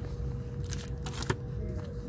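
Comic books being flipped through by hand, glossy covers sliding and rustling against each other in a few short bursts, with one sharp click partway through.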